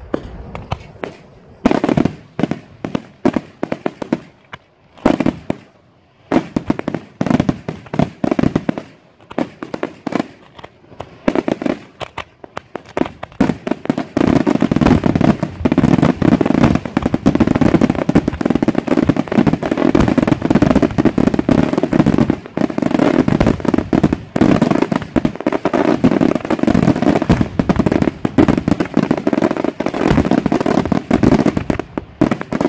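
Daytime aerial fireworks bursting overhead in sharp bangs. At first they come as separate reports, a few a second. From about halfway they merge into a dense, continuous rattle of bursts.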